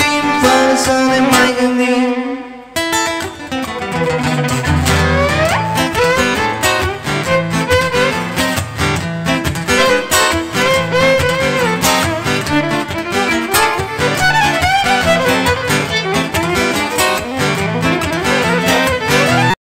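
Violin and acoustic guitar playing an instrumental passage together: the violin carries the melody with slides between notes over the guitar's accompaniment. A brief drop in level comes about two and a half seconds in.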